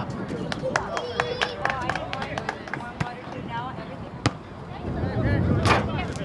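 Players calling out on a soccer pitch, with scattered sharp knocks and one loud shout near the end.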